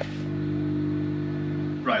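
Steady low hum of a ferry's onboard machinery, a few held low tones, heard inside a small cabin. A man says 'Right' at the very end.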